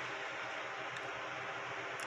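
Steady low background hiss (room tone) during a pause in speech, with no distinct event.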